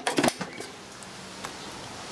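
A few short clicks and knocks in the first moment, with one faint tick later, over a faint steady hiss.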